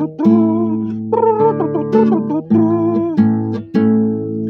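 Classical nylon-string guitar strumming chords between sung verses. A new chord is struck about once a second and left to ring.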